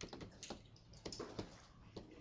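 Faint, irregular light clicking and tapping, several clicks a second.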